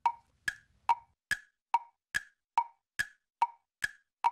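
A clock-like ticking sound effect of sharp wood-block clicks, evenly paced at a little over two ticks a second, marking thinking time while a guess is made.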